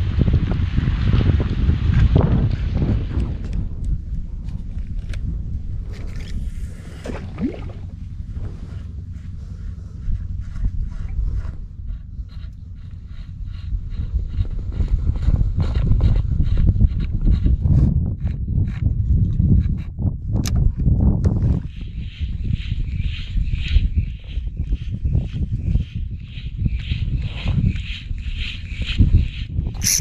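Wind buffeting the microphone in a small boat on open sea, a steady low rumble. In the second half a small spinning reel (Seahawk Shujitsu SE 800) is cranked to work a metal jig, a rhythmic whirring about twice a second.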